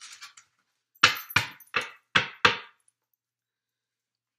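Five sharp knocks in quick succession, a little under three a second, starting about a second in, each ringing briefly.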